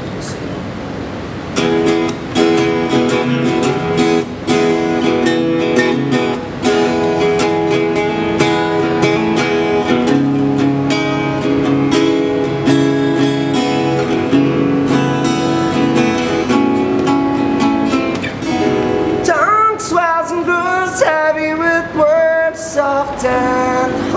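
Solo acoustic guitar playing a chordal intro in steady rhythmic strokes, joined about five seconds before the end by a man's singing voice.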